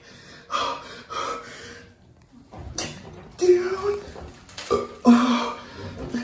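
A man's strained grunts, groans and sharp gasping breaths in about half a dozen short bursts, some drawn out with a held or rising pitch: his reaction to the shock of sitting in ice-cold water.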